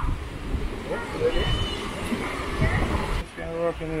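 Wind buffeting the microphone with an uneven low rumble, under faint background voices; a man's voice comes in close near the end.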